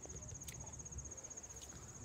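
Crickets trilling faintly: a high, rapid, evenly pulsed trill that does not change.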